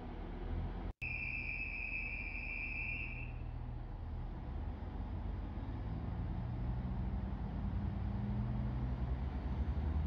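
Two-car diesel multiple unit running at the platform with a steady low engine drone, a steady high beep lasting about two seconds near the start. In the last few seconds the engine note rises and grows louder as the train pulls away.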